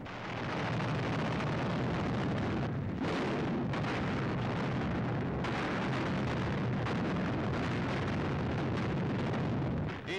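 Newsreel sound effect of a bombing raid: a dense, continuous roar of explosions, swelling in over the first second.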